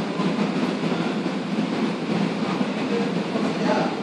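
Steady rumbling background noise with no clear pitch, its weight in the low range, like a machine running in the room.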